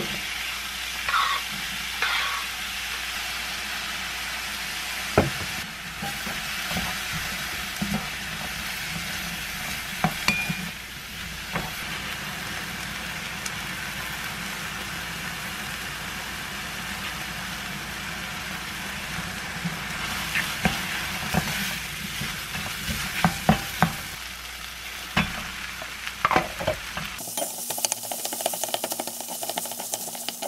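Chopped vegetables and squid sizzling in a white frying pan, with a steady hiss and scattered knocks and scrapes of a spatula stirring against the pan; the knocks come thicker towards the end.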